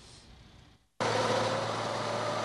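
A semi truck's drive wheels spinning on icy snow with the engine working hard. It cuts in abruptly about a second in as a loud, steady roar with a held whining tone over it.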